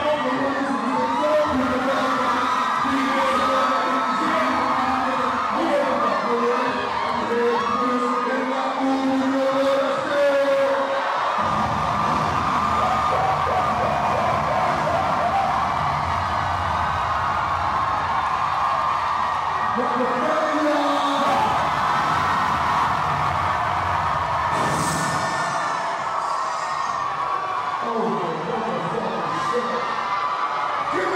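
A crowd of many voices shouting and whooping over music.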